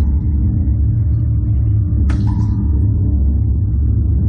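Steady, loud low rumble from the slingshot ride's machinery as the capsule is moved into position. About halfway through, a fog jet fires with a sudden short burst of hissing.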